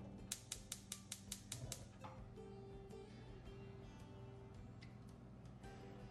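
Gas stove burner's spark igniter clicking rapidly, about seven sharp clicks a second for the first two seconds, then stopping. Faint background guitar music runs under it.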